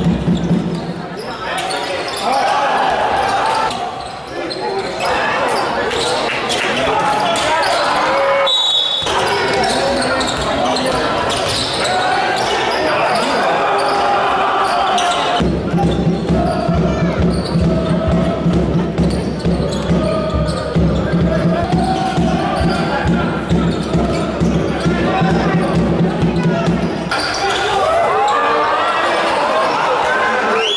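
Live basketball game sound in a large sports hall: the ball bouncing on the court and indistinct voices of players and spectators echoing throughout. A short, high referee's whistle sounds about nine seconds in.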